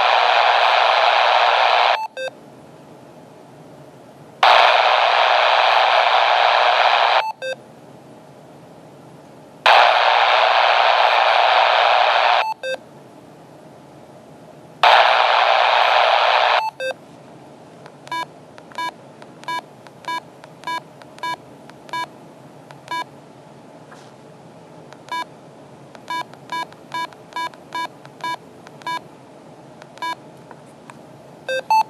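Yaesu VX-8DR handheld transceiver scanning the airband: four bursts of static hiss from its speaker, each two to three seconds long, as the squelch opens on a channel and then closes when the scan moves on. From about seventeen seconds in, a string of short single key beeps, one or two a second.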